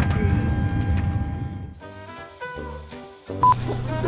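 Airliner cabin hum fading out, then a short sequence of steady electronic tones that change pitch every fraction of a second, ending in a brief loud beep about three and a half seconds in.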